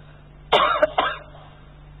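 A man coughing, three quick coughs close together about half a second in, over a faint steady hum.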